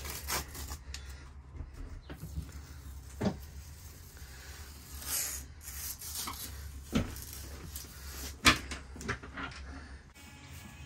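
A few sharp knocks, the loudest near the end, with some rubbing in between, over a steady low hum.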